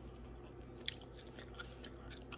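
Faint sounds of a person chewing a bite of baked turkey wing, with one small click a little before the middle.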